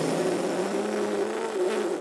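Cartoon blowing sound as a giant soap bubble is blown through a hoop: a long, steady breathy rush with a low, wavering buzzing hum underneath.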